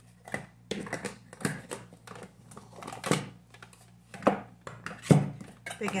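Irregular clicks and clatter of plastic makeup compacts and cases being picked up and set down while a face powder is picked out among them.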